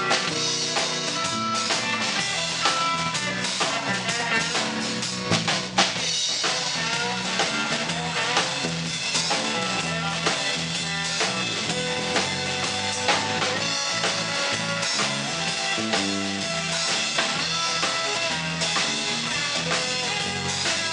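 Live country band in an instrumental break with no vocals: electric guitar playing over a steady beat on a Ludwig drum kit, with snare, bass drum and rimshots, and a Fender electric bass line underneath.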